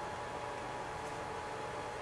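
Steady faint hiss of room tone with a thin, faint steady tone, unchanging throughout.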